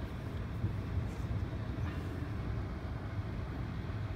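Inside the cabin of a 2006 Chrysler 300, the climate-control blower fan runs steadily, pushing air through the dash vents, over the low hum of the 3.5-litre V6 idling. The heater and blower are working.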